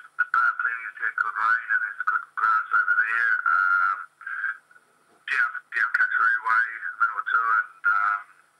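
Speech from a radio interview played back through a computer speaker, sounding thin and narrow-band, with a brief pause in the middle. No separate non-speech sound stands out.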